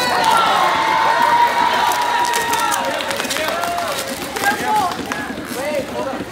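Several excited young voices overlapping, one drawn out in a long held exclamation over the first few seconds, with crinkling and rustling of plastic packing as it is pulled off a package.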